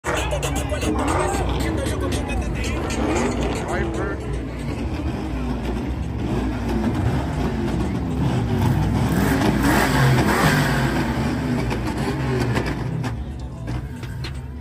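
Car engines revving hard during burnouts, with tyre-spin noise and crowd voices mixed in. Slightly louder about two thirds of the way through, easing off near the end.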